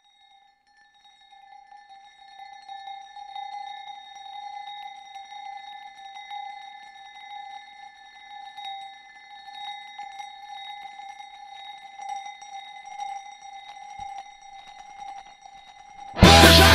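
A single sustained ringing tone, held steadily and wavering in loudness, with faint scratchy rubbing noise beneath it, like a rubbed glass rim or bowl, as a quiet passage of an experimental music track.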